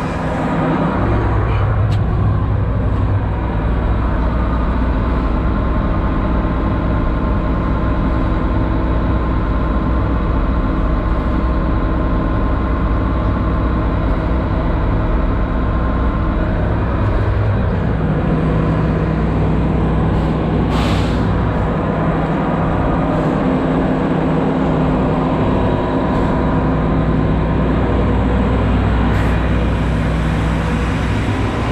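Diesel engine of a tracked heavy-equipment machine running steadily under load, heard from inside its operator's cab. The engine note steps up about a second in and shifts again a little past halfway, with a brief hiss about two-thirds of the way through.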